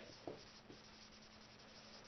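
Faint strokes of a dry-erase marker on a whiteboard, two short ones in the first second.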